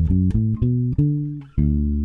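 Electric bass guitar played fingerstyle: a short run of about six plucked notes from the major pentatonic scale, each ringing briefly before the next.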